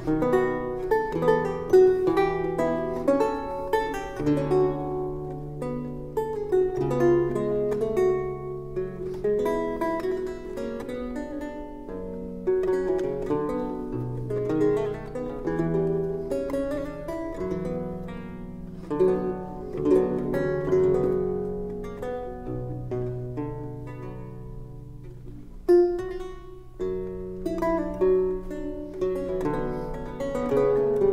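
Solo Baroque lute playing a slow allemande in C minor: plucked, decaying treble notes over held bass notes, with a softer passage that gives way to a strongly struck chord near the end.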